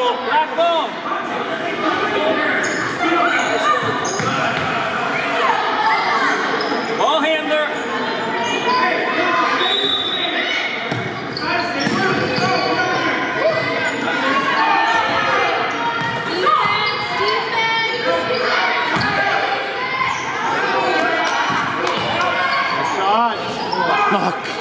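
Youth basketball game in a large gym: a basketball bouncing on the hardwood floor among scattered short knocks and squeak-like streaks, with players and spectators calling out and talking indistinctly, all echoing in the hall.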